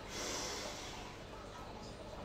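A man drawing a deep breath in through his nose, a soft hiss that fades out after about a second.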